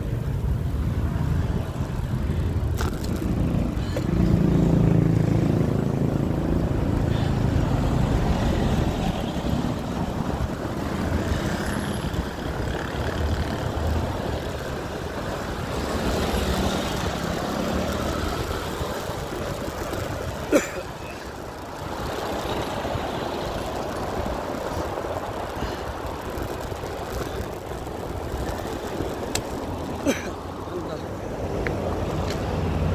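Road traffic heard from a moving bicycle: car engines and tyre noise as a continuous rumble, swelling early on and easing later. A single sharp click about two-thirds of the way through.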